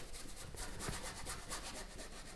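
Paintbrush scrubbing acrylic paint onto a canvas in repeated short strokes, a faint scratchy rubbing.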